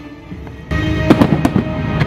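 Fireworks display with its music score: after a brief quieter lull, the music comes back in about two-thirds of a second in, and several sharp firework cracks follow in quick succession.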